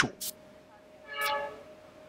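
A brief hiss just after the start, then a short steady pitched tone lasting about half a second, about a second in, over a faint steady high hum.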